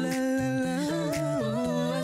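Female a cappella group singing in close harmony over a low bass line of short repeated notes, with no instruments.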